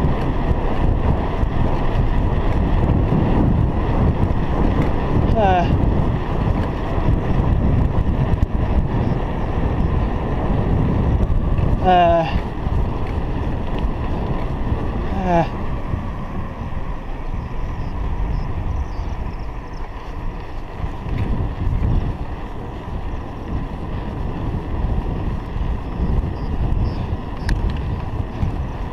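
Wind buffeting the microphone of a chest-mounted action camera on a moving bicycle, a steady low rumble that eases off somewhat in the second half. A brief spoken "uh" comes about fifteen seconds in.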